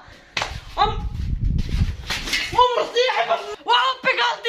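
A woman's voice crying out in a run of short, loud exclamations, the pitch rising and falling, over a low rumble that lasts about two seconds.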